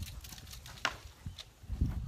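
Handling sounds: two sharp clicks and then several low thumps, as a dog lead is handled and steps move on a wooden deck.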